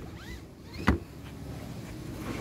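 A 2019 Mitsubishi ASX front seat belt being pulled out of its retractor as a parts test, with a short rising whir of webbing, then one sharp click a little under a second in.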